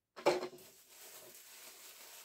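Tissue paper rustling and crackling as it is handled, with one loud crackle about a quarter second in, then a soft steady rustle.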